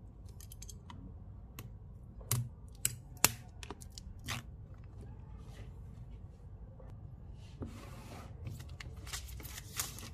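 A small knife scoring the plastic seal on a cardboard product box, making a scatter of sharp clicks and scrapes. In the last few seconds the plastic shrink-wrap film rustles and tears as it comes away.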